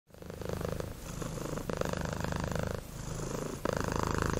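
Domestic cat purring steadily, in alternating strokes of about a second each as it breathes in and out.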